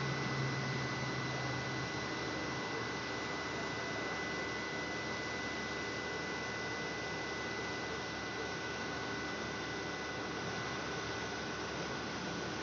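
Steady hiss with a faint high whine from a CNG dispenser while compressed natural gas flows into a vehicle. A low hum stops about two seconds in.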